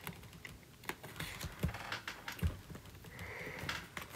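Stylus tapping and scratching on a tablet's glass screen while handwriting: a string of faint, irregular clicks.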